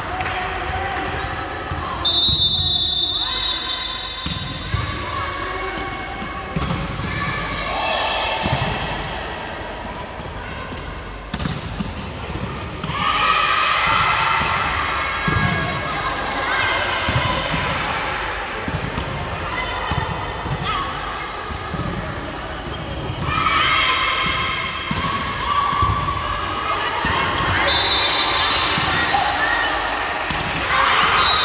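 Volleyball game sounds in a large sports hall: repeated ball hits and thuds, with players shouting and calling. A referee's whistle sounds about two seconds in.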